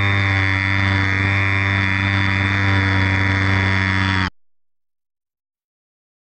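Electric motor of a Bixler RC foam plane running at a steady speed, a loud, even hum with no rise or fall in pitch. The sound cuts off abruptly about four seconds in.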